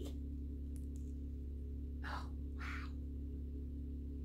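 Steady low hum of a pressure washer running in the background. About two seconds in come two short breathy sniffs, half a second apart.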